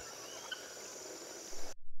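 Faint forest ambience: a steady high insect drone, with a short bird chirp about half a second in. It cuts off abruptly just before the end.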